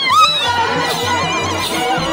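Traditional dance music: a drum keeps a steady, fast beat under high, wavering voices that are loudest in the first half-second.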